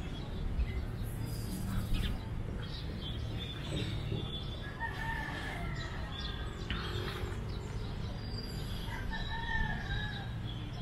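Rooster crowing twice, two long calls about four seconds apart, with small birds chirping and a steady low rumble underneath.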